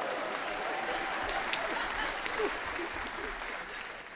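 Audience applauding, with a few scattered voices calling out, easing off slightly near the end.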